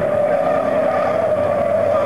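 Racing trucks' engines running hard as the trucks drive through a bend and past, with a steady high whine throughout.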